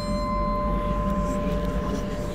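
Bell-like ringing tones held at steady pitch, one fading early on and a higher one sounding until near the end, over a low steady rumble.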